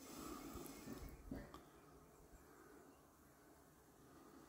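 Near silence: faint background hiss with a few faint small ticks in the first couple of seconds.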